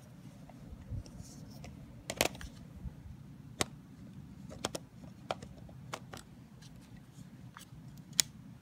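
Canon EF-S 18-55mm kit lens being fitted back onto a Canon Rebel XS body's lens mount: a scattering of sharp, light clicks and taps as the lens is lined up and turned, over a low handling rumble.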